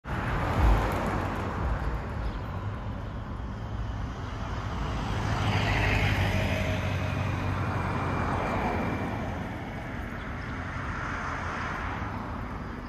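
Road traffic noise from passing cars, swelling to its loudest about six seconds in as a vehicle goes by. A brief low bump is heard near the start.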